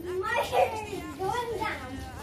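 Young girls' voices calling out and chattering while playing, their pitch sliding up and down, with no clear words.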